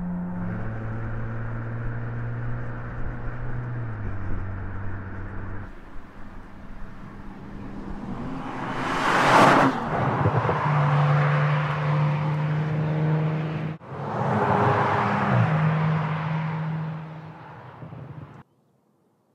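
Audi RS 4 Avant's V6 biturbo engine running as the car drives, holding steady notes that jump to new pitches several times. A rush of tyre and wind noise swells and fades as the car goes by about nine seconds in, and again around fifteen seconds in.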